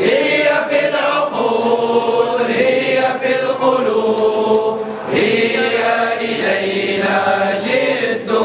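A group of people singing the association's anthem together in Arabic, in unison, with long held notes.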